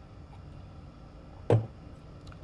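A single short knock about one and a half seconds in, a beer glass set down on the table after a sip, over low steady room tone.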